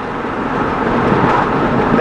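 Steady engine and road noise inside the cab of a Dodge Dakota pickup cruising on a highway, its engine running on wood gas from an onboard wood gasifier.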